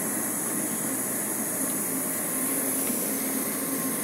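Steady drone of a large ship's machinery and ventilation: a low hum under an even, high hiss, with no distinct events.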